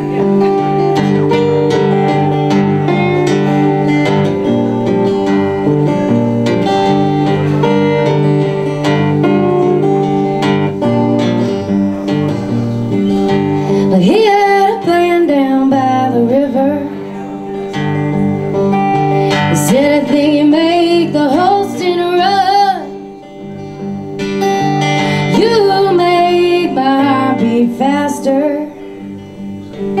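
Steel-string acoustic guitar strummed steadily, alone for about the first half. A woman's singing voice then comes in over it, line by line with short pauses between phrases.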